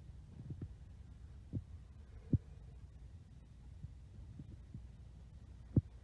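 Handling noise on a handheld camera: several soft low thuds, the loudest a little past two seconds in and near the end, over a low steady hum.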